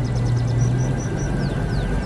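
Car engine running with a steady low drone. Over it comes a rapid high ticking, then a row of short, falling high chirps about three a second.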